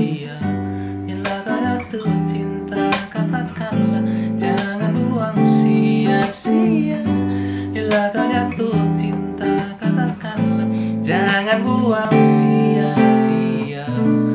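Taylor 214ce-N nylon-string acoustic guitar played fingerstyle, plucking a jazzy progression of seventh chords (G major 7, E minor 7, A minor 7, D7sus4) with a new chord about every second.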